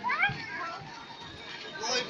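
A child's high-pitched shout, rising in pitch, in the first half second, followed by a lull and then people talking.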